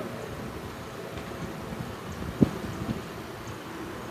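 Wind buffeting the microphone outdoors, a steady low rumble, with a single sharp thump about halfway through.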